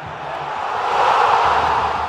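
A swelling whoosh sound effect for an animated logo: a rush of noise that builds for just over a second and then eases slightly.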